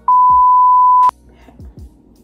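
A loud censor bleep: a steady 1 kHz beep tone lasting about a second and cutting off abruptly, covering the name asked about in "smash or pass?".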